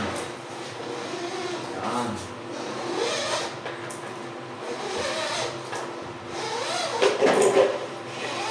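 Indistinct talking, loudest near the end, with light knocks and rattles from hands working on the drain pipes in the cabinet under a sink.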